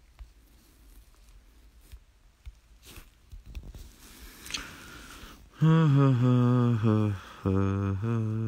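A man humming a tune in a low voice, holding steady notes that step up and down in pitch. It starts about five and a half seconds in, with a short break shortly after, after faint handling noise on the phone.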